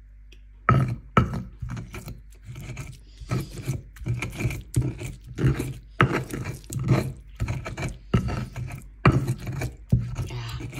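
Stone pestle grinding and crushing wet green-chilli and tomato paste in a stone mortar (cobek and ulekan): a run of gritty scraping strokes that starts about a second in and goes on at roughly two strokes a second.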